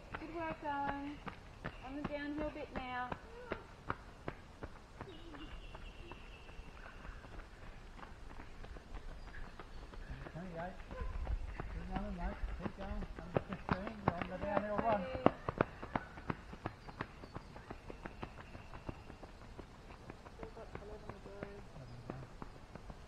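Running footsteps crunching on a gravel trail, coming closer and loudest as a runner passes a little past the middle. Unclear voices call out near the start and again around the middle.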